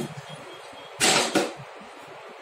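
Knocks and clatter of the Karma Rainbow 5 folding commode chair's frame and seat parts being handled while it is folded with its seat removed: a two-knock clatter about a second in.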